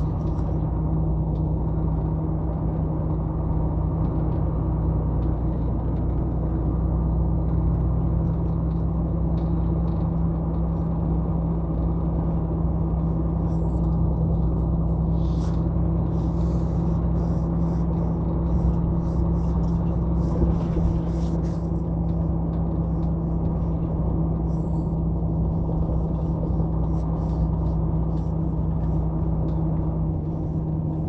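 Heavy truck's diesel engine running steadily at cruising speed, with a low even hum and tyre and road noise, heard from inside the cab.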